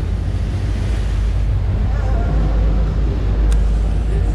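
Motorboat underway: wind buffeting the microphone over a steady low rumble of engine and water along the hull, with a single sharp click about three and a half seconds in.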